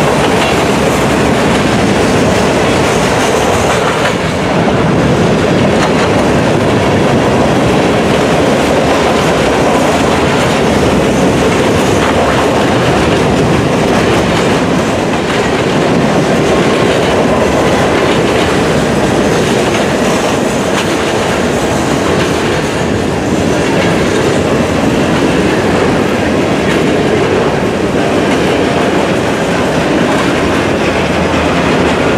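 Freight cars of a mixed freight train, mostly covered hoppers, rolling past close by: a steady, loud rumble of steel wheels on rail, with faint repeated clicks as the wheels pass over the rail joints.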